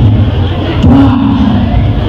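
A man's voice amplified over a PA system, with one drawn-out sound about a second in, over crowd noise from the audience.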